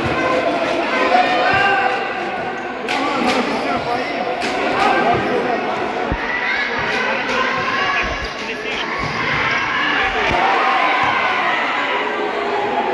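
Crowd voices and shouts echoing in an indoor sports hall, with several sharp thuds of a futsal ball being kicked and bouncing on the hard court.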